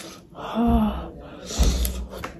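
A woman eating makes a short hum-like sound with her mouth full about halfway through. Near the end comes a sharp, gasping breath through the open mouth that puffs on the microphone.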